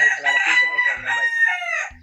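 A rooster crowing: one long crow of nearly two seconds, held steady, then dropping in pitch at the end.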